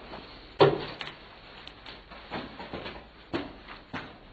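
A loud, sharp knock about half a second in, followed by several lighter knocks and clicks, as of things being handled and bumped.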